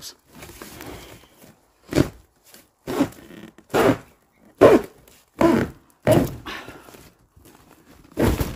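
Knocks and scrapes of handling as plastic-wrapped spools of baler twine are shifted: about six thumps, each under a second apart, over light rustling.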